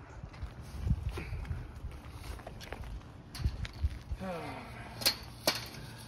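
Chain-link fence gate rattling and knocking as a person climbs onto it, with dull thumps and two sharp metallic clicks near the end. A short falling vocal sound, a grunt of effort, comes about four seconds in.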